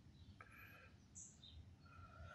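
Near silence with a few faint, short bird chirps and whistles.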